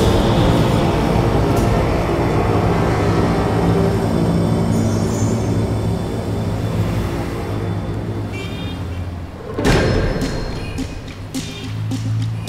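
Background music score of sustained low notes that thins out and fades a little, then a loud hit near the end followed by a few sharper strikes.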